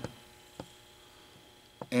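A faint steady hum under quiet room tone, with two light clicks, one about half a second in and one near the end.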